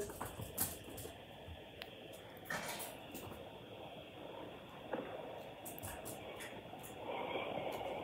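A voicemail playing through an iPhone's speaker: faint, muffled telephone-line noise with a few soft clicks and no clear words, a little louder near the end. It is the sound of an apparently accidental call, which the listener takes for a butt dial.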